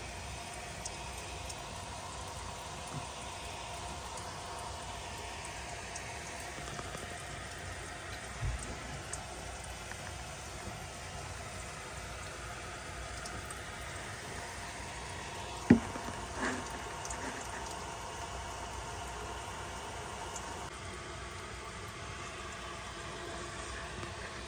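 Steady rush of water from a garden hose running over the roof, heard muffled from inside the attic below, as the roof is tested for leaks. A sharp knock sounds about two-thirds of the way in, with a few fainter knocks around it.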